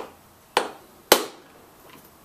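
Ball peen hammer striking an aluminium seal driver, three light blows about half a second apart, the last the loudest. Each blow taps a grease seal further into a trailer wheel hub, driving it the last bit until it sits flush.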